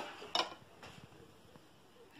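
A knife blade clinks once against a china plate while a slice of cake is being cut, followed by a couple of faint ticks.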